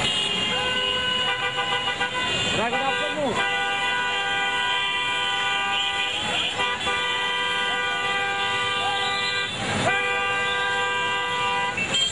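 A vehicle horn blaring long and steady in street traffic, held almost without pause apart from a few brief breaks, with voices shouting over it.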